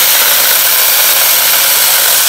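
Alloyman 6-inch battery-powered mini chainsaw cutting through a small tree trunk: a loud, steady whirr of the chain biting into the wood, cutting through easily.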